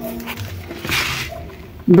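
A short rustle of a paper seed packet being handled, about a second in.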